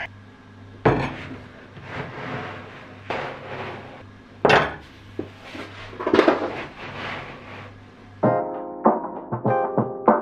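A sheet of MDF being set down and slid across an MDF bench top: a knock about a second in, another sharp knock about halfway, and scraping, rushing sounds of the board moving between them. Background music comes in near the end.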